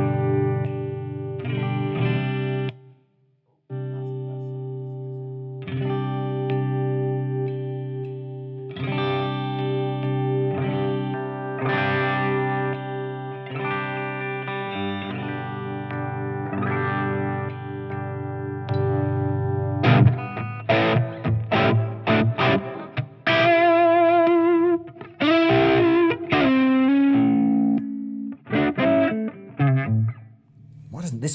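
Epiphone Les Paul Traditional Pro II electric guitar played through a Tone King SkyKing valve amp: chords struck and left to ring for a second or two each, with a brief break about three seconds in. From about two-thirds of the way through it turns to a faster single-note lead line with vibrato.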